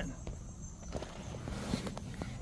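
A Toyota bZ4X's driver door being opened and a person climbing out, with faint clicks and rustling of handling.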